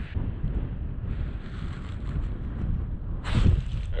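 Wind buffeting the microphone, a fluttering low rumble, with a short brushing noise about three seconds in.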